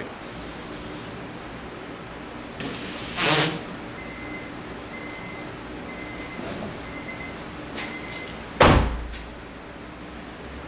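Car windshield wipers make one short sweep up the glass and stop partway when the ignition is switched off. Then the car's warning chime beeps about once a second for four seconds, and a car door shuts with a heavy thump near the end.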